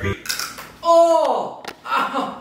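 A short, crisp crack as a man is lifted in a bear hug to have his back cracked, faked with a piece of dry pasta snapped to sound like a breaking back. About a second in comes his loud cry of pretended pain, falling in pitch.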